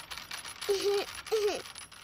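Loose metal washers jingling and rattling on the upright metal rods of a playground sound frame, shaken by a child's hand. Two short voice-like notes sound a little after the middle.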